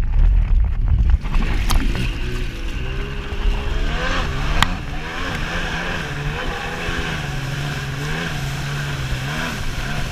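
Stand-up jet ski's two-stroke engine under way on the water. After about a second of water rushing over the microphone, the engine note comes up, rising and falling with the throttle for a couple of seconds, then holding a steady cruising pitch.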